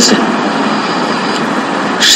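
Steady rushing background noise with no clear pitch, a little quieter than the speech around it.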